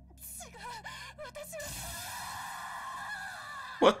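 A woman's voice from an anime soundtrack: a stammered line and a gasp, then a long drawn-out cry that slowly sinks in pitch for about two seconds. A man's voice cuts in at the very end.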